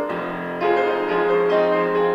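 Piano accompaniment playing held chords, a new chord about every half second, in an instrumental gap between sung phrases of a song.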